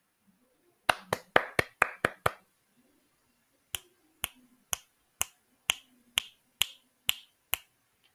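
Hand claps, about seven in quick succession about a second in, then finger snaps, about nine at about two a second, through the second half.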